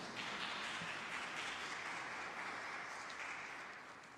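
A congregation clapping in a steady patter that thins out and dies away near the end.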